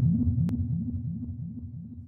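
Electronic intro sting fading out: a low synthesized pulse repeating about five times a second, each pulse a quick upward sweep, dying away steadily.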